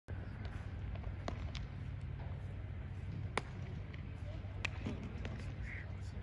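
Outdoor baseball fielding drill: several sharp cracks of a baseball striking bat and glove, the loudest about three and a half seconds in, over a steady low rumble with faint distant voices.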